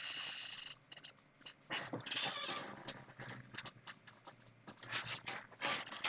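Sheet of painting paper being handled and shifted, rustling and crinkling in short irregular bursts with a few light taps.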